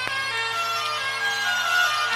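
Instrumental passage of a slow rock song: a held, reedy melody line moving between sustained notes over a steady low drone.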